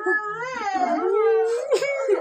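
A small child's high-pitched voice in a long, drawn-out cry that wavers up and down in pitch, with a sharp dip and rise near the end.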